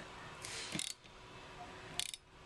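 Rear wiper arm of a Land Rover Discovery 3 being shifted by hand on its spindle, giving a brief run of clicking rattles about half a second in and a single sharp click at the end.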